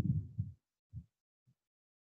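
Low, muffled thumps: a short cluster in the first half-second, then two single soft knocks about a second and a second and a half in.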